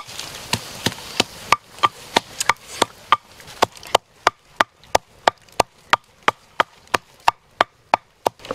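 Wooden pestle pounding red chillies in a wooden mortar: repeated dull knocks, uneven at first, then settling into a steady beat of about three strikes a second.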